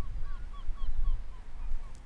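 A bird calling in a fast, even run of short repeated calls, about four a second, over a steady low rumble.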